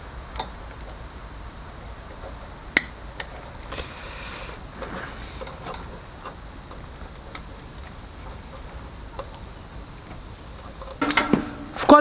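Hand tools being handled on a garage floor: a few sharp, light metallic clinks of steel spanners, the loudest about three seconds in, over low background noise. A man's voice starts near the end.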